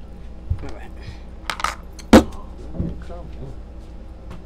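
Small hard objects clinking and jangling as they are handled, with one sharp, loud knock about two seconds in. A short murmur of a voice follows the knock.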